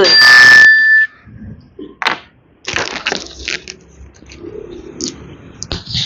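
A short, loud electronic chime from the MotoScan Tab diagnostic tablet in the first second, marking the end of the sensor test. It is followed by scattered rustles and light knocks of the stator and its wiring being handled.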